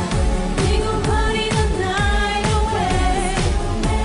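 K-pop girl-group dance song: female vocals over an electronic beat with a steady kick drum about twice a second.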